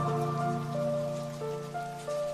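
Calm outro music: a held low note under slow, ringing melody notes that change every half second or so, fading gradually, with a faint hiss of small ticks over it.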